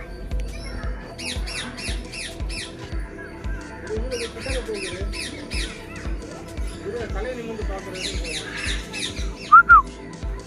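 Birds squawking and chattering in quick runs of short, falling, high-pitched calls, in several clusters, with one sharp louder double call near the end.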